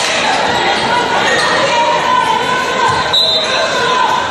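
Gym sound of a girls' basketball game: voices and shouts from the crowd and players echoing in the hall, with a brief high tone about three seconds in.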